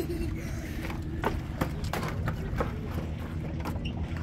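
Sneakers stepping and shuffling on wooden dock boards, a few irregular knocks, over a steady low rumble.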